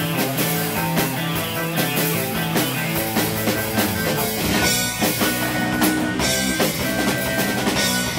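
A live surf-rock band playing an instrumental: electric guitar, bass, keyboard and a drum kit with a steady beat. A single high note is held through the second half.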